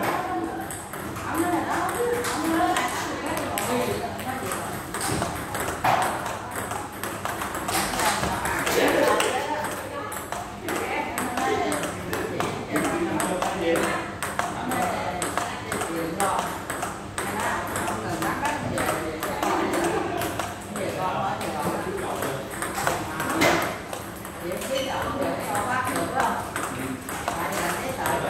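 Table tennis ball clicking off paddles and the table in a steady forehand-to-forehand rally, a continuous run of sharp ticks.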